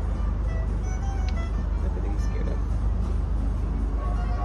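Steady low rumble of street traffic with faint music in the background.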